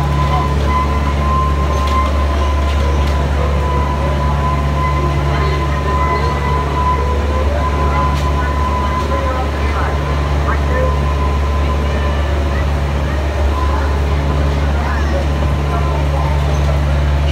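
Diesel engine of a one-third scale miniature railway locomotive running with a steady low hum as the train rolls slowly along a station platform, with a thin steady whine above it.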